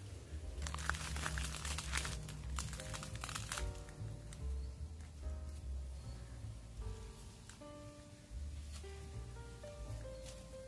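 Background music: a melody of held notes over a repeating bass line. Over the first few seconds a run of crackling, crinkling noises sounds along with it.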